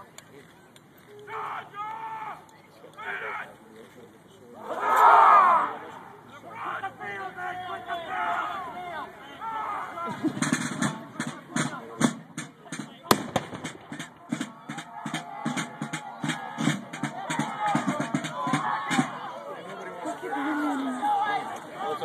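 Field reenactment with a man's loud shouted command about five seconds in over crowd murmur. From about ten seconds a rapid, even drumbeat runs for some ten seconds, with one sharp crack about three seconds after it starts.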